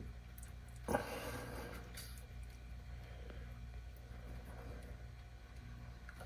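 Quiet shop room tone with a steady low hum, broken by one short click about a second in as the thumbscrew on a nitrogen fill gauge is turned to open an ORI strut's Schrader valve.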